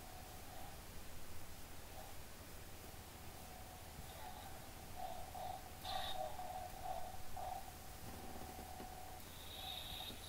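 A homemade lightsaber's toy soundboard hums faintly through its small speaker, swelling in pitch and loudness as the blade is swung. The swells are strongest from about five to seven and a half seconds in, with a brief sharp sound about six seconds in, and the hum stops shortly before the end.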